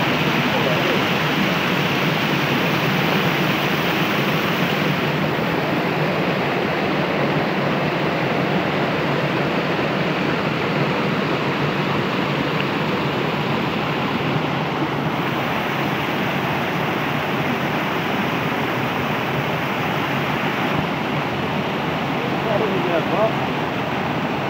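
Mountain stream water rushing and splashing over rocks in small cascades: a loud, steady rush that turns a little duller after about five seconds.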